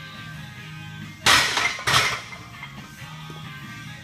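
A loaded 200-lb barbell racked onto a power rack's steel hooks: two loud metal clanks a little over half a second apart, each with a brief ring. Background music runs underneath.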